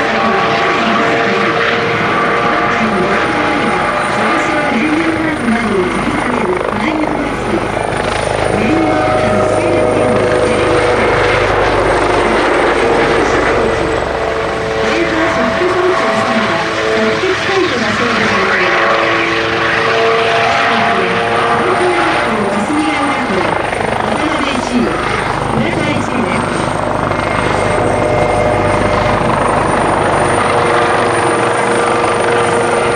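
Kawasaki OH-1 twin-turboshaft observation helicopter flying overhead: steady rotor and turbine sound with a steady whine.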